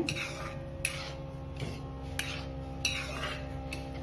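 A metal spoon stirring curd curry in a nonstick pan, with a handful of light scrapes and knocks against the pan, over a faint steady hum.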